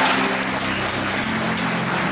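Audience applauding, the clapping thinning out, with low held notes of music underneath.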